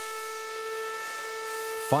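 Steam whistle of a Baldwin 4-4-0 wood-burning locomotive held in one long steady blast, with a hiss of steam behind it.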